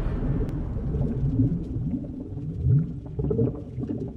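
Deep synthesized sound-design drone for a logo intro, made of short low swoops in pitch repeating a few times a second.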